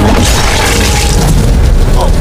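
Loud, heavy booming sound effect with a sharp hit at the start, laid over background music.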